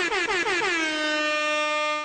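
Outro logo sound effect: a loud, bright, horn-like tone that stutters in quick falling pitch dips, about five a second, then holds one steady note for the last second.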